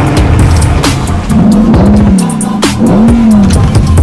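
Toyota Supra's engine revved twice, each rev rising and then falling in pitch, over music with a beat.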